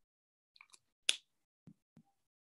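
A single sharp click about a second in, with a few faint ticks before and after it.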